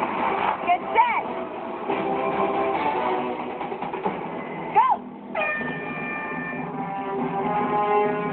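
People shouting and cheering, then about five seconds in a starting horn sounds one steady blast of a little over a second to set off the race, with guitar music running under it. Heard through a television speaker.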